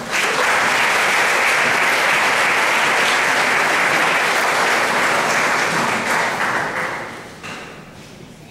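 Audience applauding in a large hall, starting suddenly and holding steady, then dying away about a second before the end.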